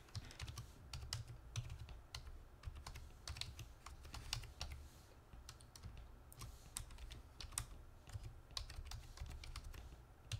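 Typing on a computer keyboard: quiet, irregular key clicks with short pauses between runs of keystrokes, over a low steady hum.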